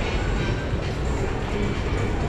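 Steady low rumble of background noise in a busy indoor public space, with no distinct events.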